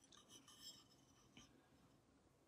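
Faint scratching of a paintbrush stroking china paint across a porcelain surface, a few soft strokes in the first second and one more about halfway through, otherwise near silence.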